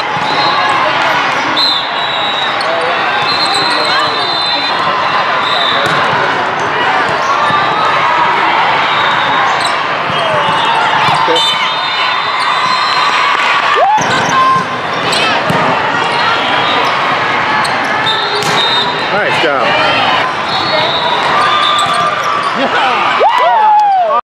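Busy volleyball tournament hall: many overlapping voices, volleyballs being hit and bouncing on the courts, and sneakers squeaking on the court floor, in a large hall.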